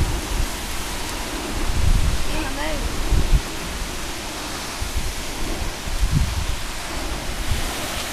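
Steady outdoor wind noise on the microphone, with irregular low rumbles.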